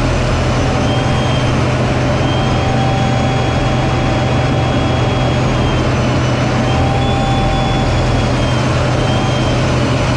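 F-16 fighter jet's engine and airflow heard inside the cockpit in flight: a loud, steady low drone with a thin high whine that wavers slightly in pitch.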